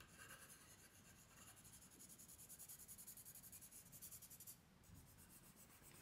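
Faint scratching of a soft 6B graphite pencil shading on paper, in quick back-and-forth strokes of several a second that grow a little stronger in the middle and stop about a second and a half before the end.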